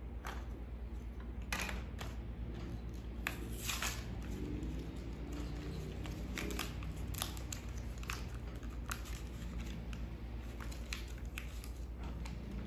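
Irregular plastic clicks and knocks as the case of a small battery-powered wireless sprinkler-valve controller is handled and opened for its batteries to be fitted, with a steady low hum underneath.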